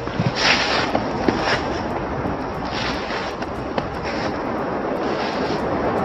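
Steady rushing wind noise on a handheld camera's microphone outdoors, with a few brief louder swells and small clicks.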